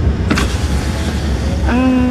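Steady low rumble of a moving car heard from inside the cabin. There is a brief noise about a third of a second in, and a voice begins near the end.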